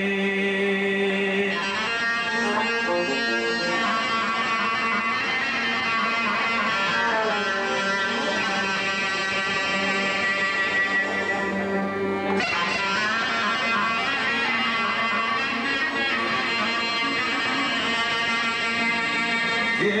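Live Greek folk band music: a clarinet plays a long held note, then an ornamented melody, over plucked lute and keyboard accompaniment.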